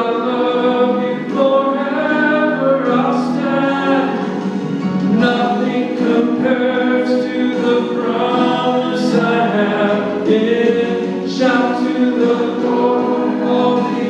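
A man singing a solo gospel song into a handheld microphone over a steady accompaniment, with long held notes between shorter phrases.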